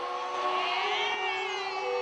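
Arena crowd screaming and cheering, with many high voices held in long overlapping calls and one rising about halfway through.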